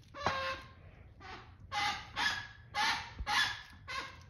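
Squeaker inside a plush bird dog toy squeaking about six times in quick succession as a greyhound bites down on it.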